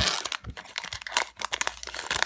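Foil Pokémon booster pack wrapper crinkling and tearing as it is pulled open by hand. The crackling is densest in the first half second, then comes in scattered crinkles.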